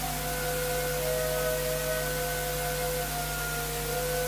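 Orchestra playing soft held notes, a few pitches overlapping and changing slowly, over a steady hiss and a low hum from the recording.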